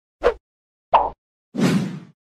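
Three short cartoon pop sound effects from an animated logo intro, the third, near the end, longer and fuller than the first two.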